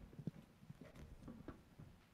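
Near silence in a room, broken by faint, irregular knocks and taps, a few to the second.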